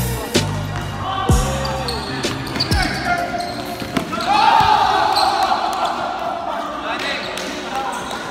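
A basketball bounces on a hardwood gym floor several times in the first three seconds, over faint background music. Players' voices call out, louder from about four seconds in.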